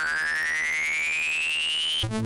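Electronic synth sound effect for a title card: a tone rising steadily in pitch over a low, evenly pulsing note, cutting off at the end.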